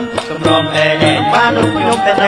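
Two men singing a Khmer song into microphones, backed by a Khmer traditional music band with held instrumental tones and regular percussion strokes.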